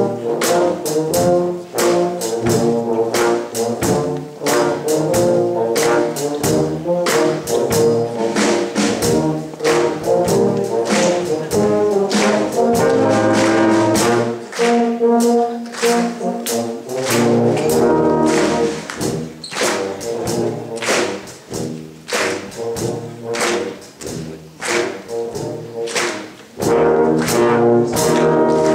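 Brass band with tubas playing a lively piece, backed by regular drum-kit hits, heard in a large hall.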